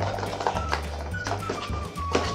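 Background music with steady bass notes and a simple held melody, with a few light plastic taps from the lid of a small toy bin being opened.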